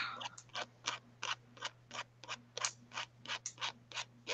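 Posca paint-marker nib scratching across paper in short, quick strokes, about five a second.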